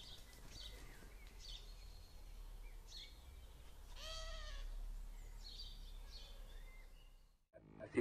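Faint outdoor ambience: scattered short bird chirps over a low rumble, with one longer, pitched call about four seconds in. The sound cuts out shortly before the end.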